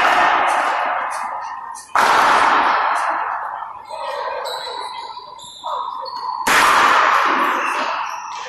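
Paddleball struck hard by a paddle and hitting the front wall, two loud sharp hits about four and a half seconds apart, each ringing out in a long echo through the hall.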